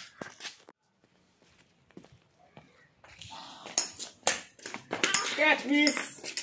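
Voices calling out near the end, after a few sharp knocks; a nearly quiet stretch of about two seconds comes in the first half.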